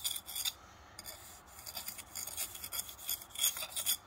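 Steel jointing bar scraping along fresh mortar joints between engineering bricks, tooling the joints in a run of short rasping strokes with a brief pause about half a second in.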